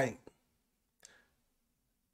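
A man's voice trailing off on one drawn-out word, then a pause with a short click just after it and a faint brief sound about a second in.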